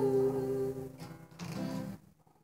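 A girl singing a long, wavering held note over a ringing guitar chord; the voice fades out about a second in. A second strummed chord then rings briefly and cuts off suddenly.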